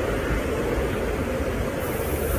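Steady background noise with a low hum, no speech.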